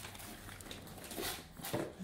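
Faint rustling of torn gift-wrap paper and a cardboard toy box being handled.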